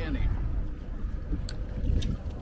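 Wind buffeting the microphone on a boat over choppy water, a steady low rumble, with one sharp click about a second and a half in.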